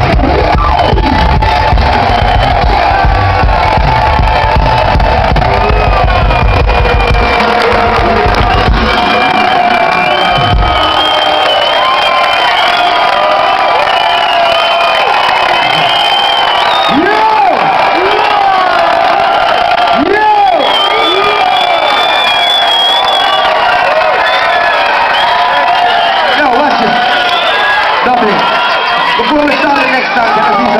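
A live reggae band's bass-heavy music ends about nine seconds in, followed by a concert crowd cheering, whooping and shouting.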